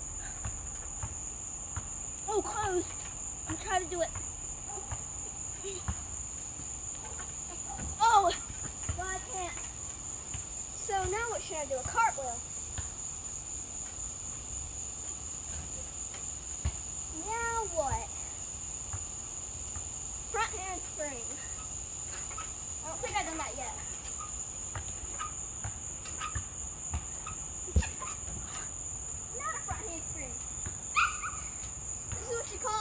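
Crickets chirping in a steady, high-pitched chorus, with a few short snatches of voices over it.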